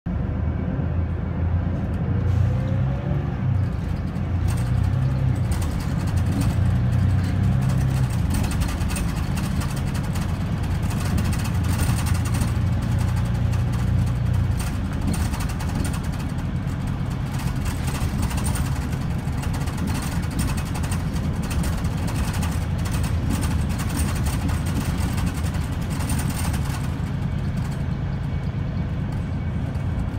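Inside a moving Mercedes-Benz Citaro O530 single-deck bus: the engine's steady low drone under tyre and road hiss and small interior rattles. The engine note eases about halfway through, and the road hiss dies away near the end.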